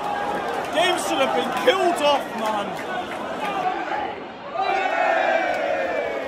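Football crowd in a stadium stand: nearby fans shouting over a general roar, then, after a brief lull about two-thirds of the way in, many voices holding a long sung chant together.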